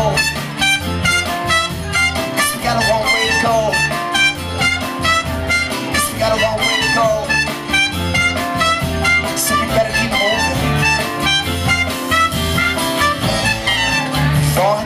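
Live band playing an instrumental break: a trumpet and fiddle carry the melody over acoustic guitar, bass and drums keeping a steady beat.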